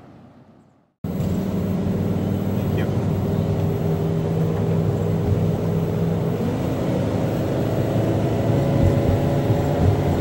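A vehicle's engine and road noise heard from inside the cab of a moving RV, a loud steady drone with a low hum. It begins abruptly about a second in, and its pitch shifts slightly about six seconds later.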